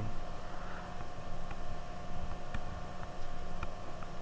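Steady electrical hum and hiss of the recording setup, with a few faint ticks scattered through it.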